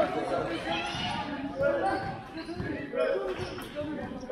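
A basketball bouncing on a sports hall floor during play, repeated knocks that ring in the large hall, mixed with players' and spectators' voices.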